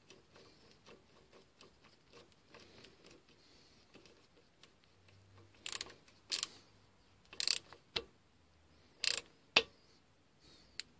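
A hand-worked ratcheting mechanism on the machine: faint ticking at first, then about six short, sharp ratcheting rattles in the second half.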